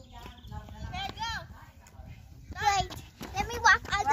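Voices of a few people talking in short bursts, over a steady low rumble of wind on the microphone.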